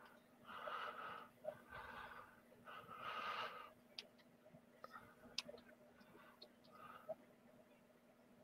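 Faint breathing close to a microphone: three soft breaths in the first half, then a few faint ticks, over a steady low hum.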